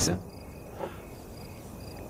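Crickets chirping in the background: high-pitched chirps in short, repeated pulses over a quiet night ambience.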